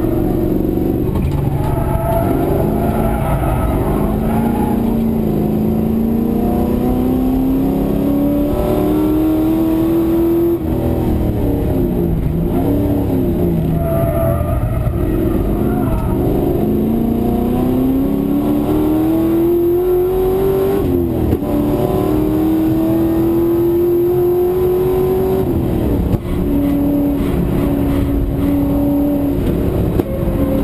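V8 race car engine heard from inside the cabin at racing speed, revving up in long climbs through the gears. Short drops in pitch mark gear changes about a third of the way in, around two-thirds and near the end. In the middle the revs fall and rise again through a corner.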